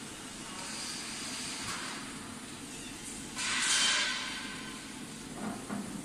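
CO2 laser marking machine running as it engraves a wooden board: a steady hiss, louder for about half a second midway.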